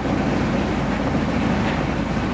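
A sailboat's freshly rebuilt diesel engine running steadily at mid-throttle, pushing the boat at about five knots: an even low drone with a fast pulse.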